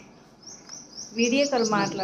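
A small bird chirping: a quick run of short, high, falling chirps, about four or five a second, starting about half a second in. A woman's voice, rising and falling like laughter, joins in the second half.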